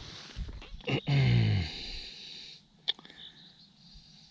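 Hands scraping and scooping through damp beach sand. About a second in, a short, loud, breathy vocal noise from the man, falling in pitch. A single sharp click comes near three seconds in.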